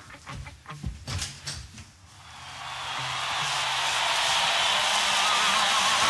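Sound-effect lead-in to a hard rock track. First come a few scattered clicks and knocks, then a noisy swell that builds steadily for about four seconds, with a wavering tone near its peak, until the band comes in.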